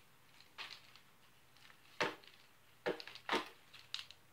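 Plastic toy lightsaber pieces being handled and fitted together: a handful of short clicks and knocks, the loudest about two seconds in and several more close together in the last second or so.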